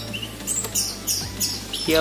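Caged songbird chirping: a run of short, high chirps starting about half a second in.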